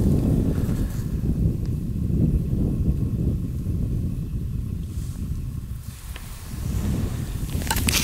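Wind buffeting the microphone: a low, uneven rumble that eases for a moment about six seconds in and then builds again.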